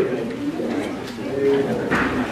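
Indistinct low voices murmuring, with a short pitched vocal sound in the middle.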